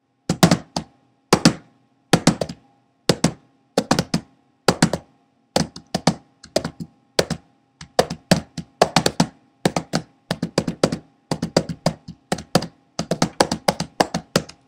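A series of sharp taps, at first roughly one a second, then coming faster in quick clusters through the second half.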